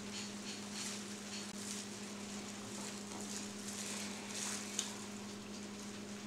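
Faint knife-on-meat and chewing sounds as a slice of smoked leg of lamb is cut off and eaten, a few soft scrapes and mouth noises over a steady low hum.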